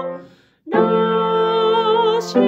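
Simple left-hand piano accompaniment played under a woman singing the melody line with vibrato. A held note fades away just after the start, a short silence follows, then a new chord and sung note begin under a second in and are held, with a quick breath near the end.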